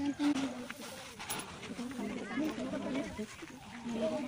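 Faint, indistinct chatter of several children's voices, much quieter than the counting on either side.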